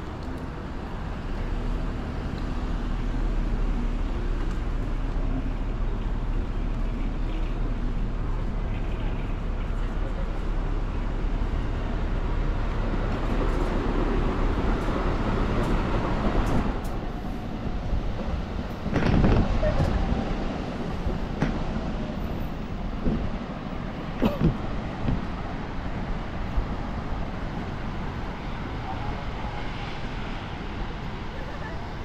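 Street traffic around a station bus rotary, a steady low rumble of buses and cars, with a louder swell of a vehicle passing about two-thirds of the way through.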